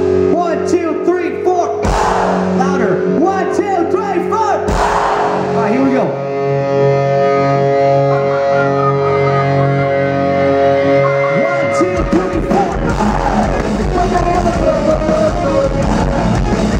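Pop-punk band playing live with the crowd shouting along: two loud hits from the band about three seconds apart, then a held chord, and about twelve seconds in the full band comes in with drums.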